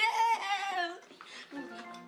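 A woman and girls saying "yeah" with laughter in the first second. About a second and a half in, soft background music with held notes comes in.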